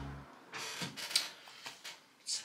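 Guitar background music cuts out just at the start, then faint handling noises: soft rustles and a few light clicks.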